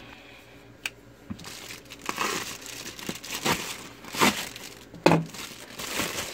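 Plastic bubble mailer being cut open with a pocket knife and pulled apart. The plastic crinkles and rips irregularly from about a second and a half in, with several louder rips.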